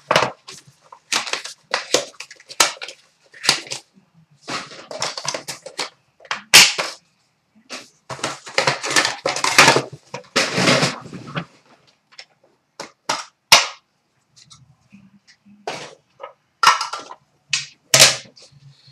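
Trading-card packaging and cards being handled: irregular rustling and crinkling of wrappers and cardboard, broken by sharp clicks and knocks of cards and hard plastic card holders being set down.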